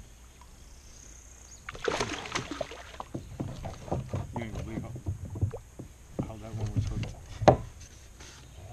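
Voices talking, mixed with a run of knocks and clatter from handling gear on the kayaks, starting about two seconds in; the loudest sound is a single sharp knock near the end.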